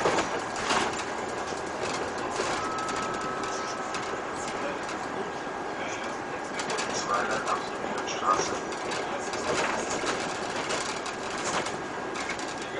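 Cabin noise of a city bus on the move: a steady rush of engine and road noise with scattered rattles and clicks. A short, faint high whine comes about three seconds in.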